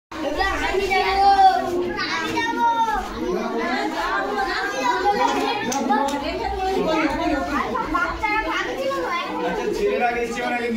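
A roomful of children talking and calling out at once, many voices overlapping into a steady hubbub.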